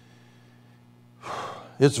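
A man's audible intake of breath into a microphone a little past a second in, just before he starts speaking again, over a steady low hum.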